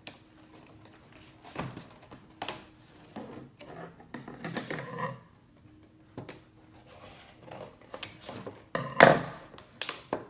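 Cardboard and plastic toy packaging being cut with scissors and pried open by hand: irregular clicks, snips and crinkling rustles, with a louder one about nine seconds in.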